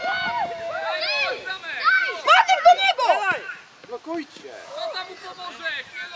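Several voices calling out and talking over one another, with a few sharp clicks or slaps about halfway through.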